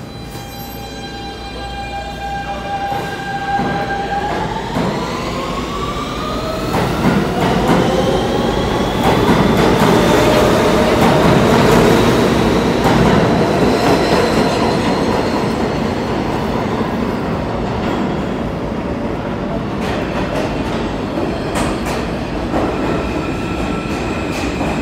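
R160B subway train with Siemens propulsion pulling out of the station. Its traction inverters whine on one steady tone for about four seconds, then in several pitches that rise together as the train accelerates. Wheel and rail noise builds under the whine, is loudest about halfway through and then eases off as the last cars pass.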